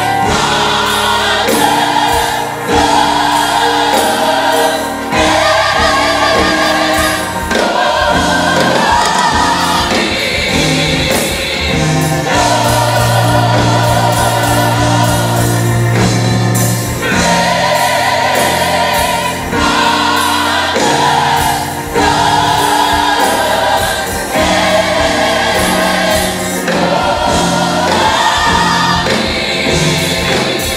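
Gospel mass choir singing live with band accompaniment, drum hits keeping a steady beat under the voices. A low bass note is held for a few seconds midway.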